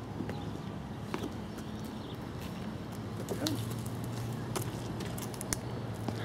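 Outdoor ambience of people walking over dirt and grass, with scattered soft clicks and steps and a faint steady low hum that sets in about halfway.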